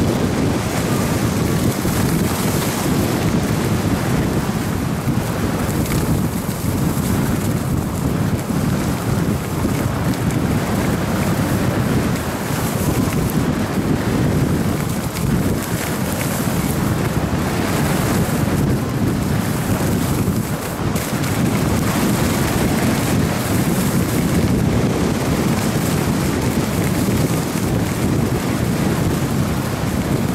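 Wind buffeting the microphone of a camera moving fast downhill on skis, mixed with the continuous hiss and scrape of skis on packed snow, loud and steady with a couple of brief dips.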